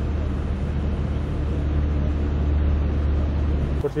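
Steady low rumble of an idling vehicle engine with road noise. It cuts off abruptly just before the end, as a voice begins.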